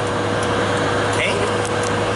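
Steady road and engine noise inside the cabin of a vehicle moving at highway speed, with a constant low hum.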